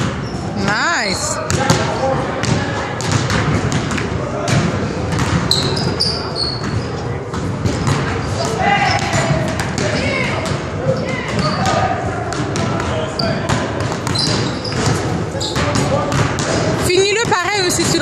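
Basketballs bouncing repeatedly on a hardwood gym floor during dribbling drills, several balls at once in an irregular patter, with voices in the hall.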